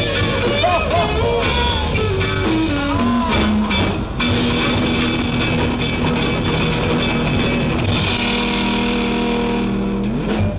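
Late-1960s Hungarian beat-rock band recording with guitars, bass, drums and voices. A wavering phrase and a falling run lead into a long held final chord that closes the song.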